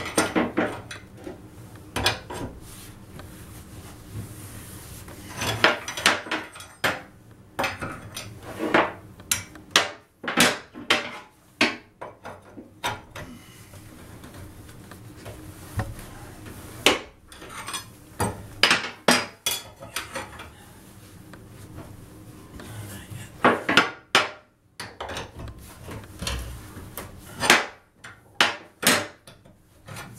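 Pipe wrench and flat wrecking bar clanking and scraping against an old bathtub drain flange and the steel tub as the wrench turns the bar to unscrew the flange. The sound comes in irregular clusters of sharp metal knocks, with quieter gaps between.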